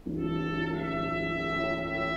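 Wind ensemble entering suddenly with a sustained chord, the held tones steady and unchanging throughout.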